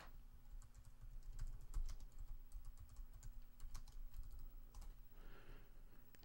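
Typing on a computer keyboard: an irregular run of faint, quick key clicks as a short name is typed in, with a sharper single click at the start.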